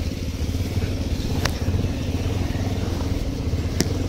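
Motorcycle engine running steadily under way, with road and wind noise, and two sharp clicks about one and a half seconds and near four seconds in.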